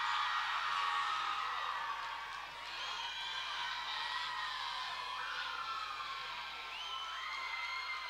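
Audience cheering and whooping, a steady wash of crowd noise with scattered high shouts and whoops throughout.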